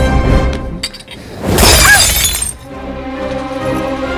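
Glass shattering once, loud and sudden, about a second and a half in, over film background music that turns to held dramatic chords afterwards.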